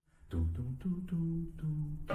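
A man humming a low melody in short held notes that step up and down about every half second. Each note starts with a sharp click, like a beatboxer's mouth sound. It begins abruptly about a quarter second in.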